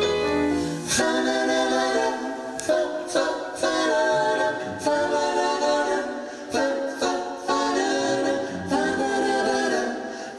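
Mixed male and female vocal group singing in close harmony with little accompaniment. A low held note stops about a second in, and short sharp hits mark the singing after that.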